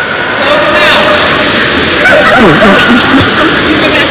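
Pool water splashing and sloshing against a camera held at the water's surface, a steady loud rush of noise, with voices faintly in the background.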